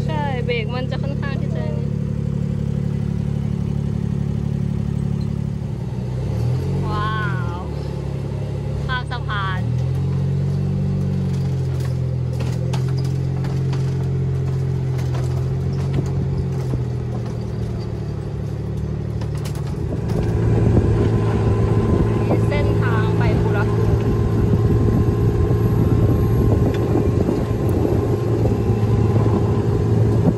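Small buggy's engine running while it is driven, a steady low hum that shifts in pitch about six to ten seconds in. Scattered clicks and knocks come in the middle stretch, and from about twenty seconds in the sound gets louder and noisier as it picks up speed.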